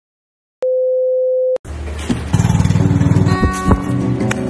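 Silence, then a steady electronic beep tone lasting about a second, cut off sharply. About a second and a half in, music begins over a rough noisy background, with a fast low pulsing and then held notes near the end.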